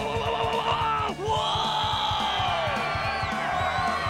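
A long drawn-out scream that rises slightly and then falls away in pitch over about two seconds, starting about a second in, over commercial background music with a steady beat.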